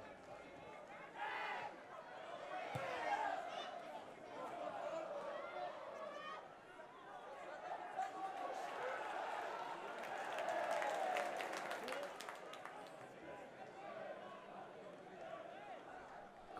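Football stadium crowd: many supporters' voices shouting and chanting at once, fairly quiet and steady, with a flurry of sharp clicks in the middle.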